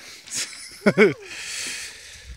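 A person's short wordless vocal sounds, twice in quick succession about a second in, followed by a brief steady hiss.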